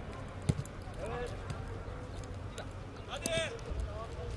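Field ambience at a football match: faint shouts from players on the pitch, one call about a second in and a louder one just after three seconds, with a single sharp knock of a ball being struck about half a second in.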